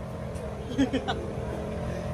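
Steady low engine rumble in the background, with faint voices briefly about a second in.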